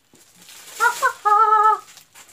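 A woman's high-pitched squeal of delight: two short rising yelps about a second in, then a held, wavering note near the end.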